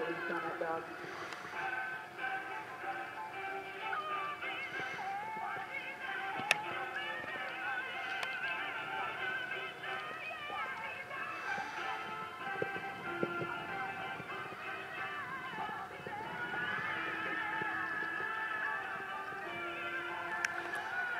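Background music with a singing voice and a steady beat, with a single sharp knock about six and a half seconds in.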